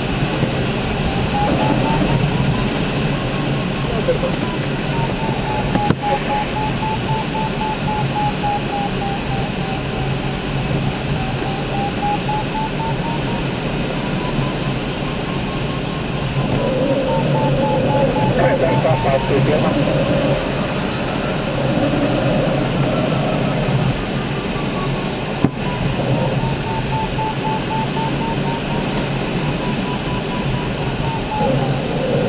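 Audio variometer in an ASH 25 glider cockpit beeping in quick succession, its pitch slowly rising and falling as the glider circles in a thermal, over a steady rush of airflow around the canopy. A couple of sharp clicks sound partway through.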